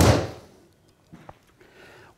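A 7-iron striking a golf ball off a hitting mat: one sharp crack right at the start, dying away within about half a second. It is not the best strike.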